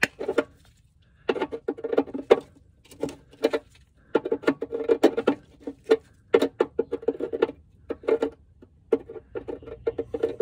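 Pliers turning a drilled shear bolt on a car alarm siren bracket: metal clicking and scraping in quick runs of small sounds, with short pauses between spells.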